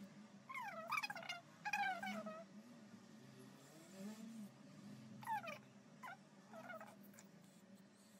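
An animal's short, high calls, four in all, each falling in pitch, with a faint low hum beneath.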